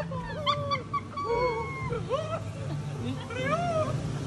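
Jungle animal calls from a rainforest ride's soundscape: a jumble of short yelping, whistling and chirping cries that slide up and down in pitch, over a steady low hum.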